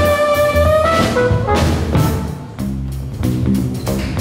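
Live jazz band playing an instrumental passage on keyboard, electric guitar and drum kit. Long held notes give way, after a brief dip about two and a half seconds in, to a lower, busier line over the drums.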